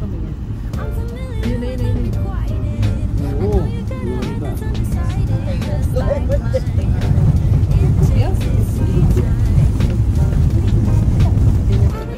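Low engine and road rumble heard from inside a moving car, growing louder about halfway through, under a pop song with singing.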